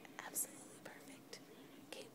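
A woman whispering softly and breathily, with a short hiss about half a second in, then only faint sounds.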